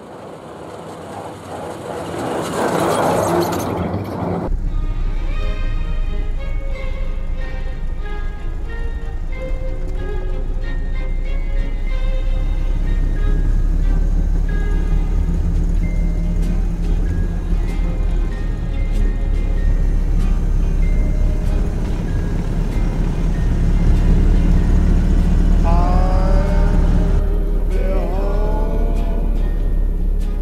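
Background music over the steady low rumble of a Ford Model A's four-cylinder engine and road noise as the car drives, with a brief rush of passing-vehicle noise a few seconds in.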